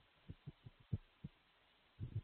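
Faint, irregular low thuds of a computer keyboard and mouse being used: about five separate knocks in two seconds, with no voice.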